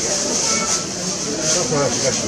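Indistinct speech from people talking at a busy shop counter.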